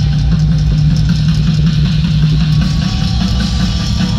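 Loud live rock music in an arena, dominated by a steady low drone, heard from seats far from the stage.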